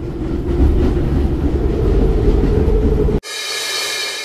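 Broadcast sound bed: a low, steady rumble under the end of a TV advert cuts off abruptly about three seconds in. A bright, shimmering chime-like transition sound replaces it and begins to fade.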